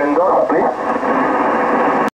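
A voice received over a Yaesu HF ham transceiver, narrow and thin-sounding as on a shortwave voice contact.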